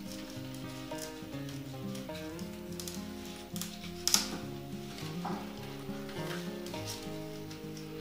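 Quiet instrumental background music with steady notes. Over it come occasional rustling of leaves and gloved hands and a few short clicks as a philodendron stem is handled and cut; the sharpest click is about four seconds in.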